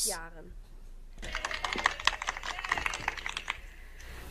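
A rapid, irregular run of sharp clicks, with faint voices beneath, starting about a second in and lasting about two and a half seconds.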